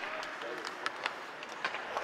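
Ice-hockey practice sounds in an arena: a steady hiss of skates and rink noise with several sharp clicks of sticks and pucks scattered through it, and a faint distant voice about half a second in.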